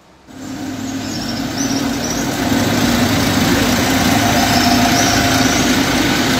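A vehicle engine running at a steady idle-like hum with street rumble, fading in over the first second or so. A few faint high chirps sound now and then.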